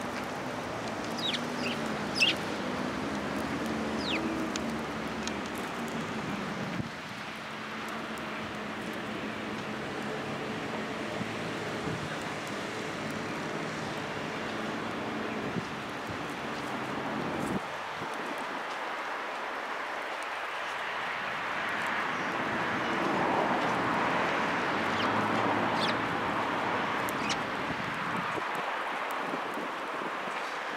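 Eurasian tree sparrows chirping a few times in quick succession near the start, with an odd chirp later, over a steady outdoor background hiss that swells in the second half.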